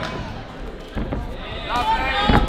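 Two dull thuds in the ring, about a second in and again near the end, over the low murmur of the crowd in the hall; a man's voice calls out near the end.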